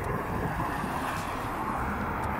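Steady road traffic noise from cars and vans driving through a wide city intersection, an even hum with low rumble.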